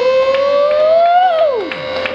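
Sustained electric guitar feedback at the close of a noise-rock song: one held tone rises slowly in pitch, then dives steeply downward about a second and a half in, like a whammy-bar dive, over a second steady drone.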